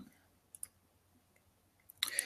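Near silence with a few faint computer mouse clicks: two in quick succession about half a second in, and one more near the end.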